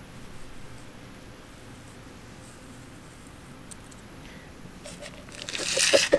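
Faint background hiss with a few soft clicks. Near the end comes a short, louder burst of plastic rubbing and scraping as a hydroponic net cup holding a rockwool cube is handled and fitted into the hole of a plastic container lid.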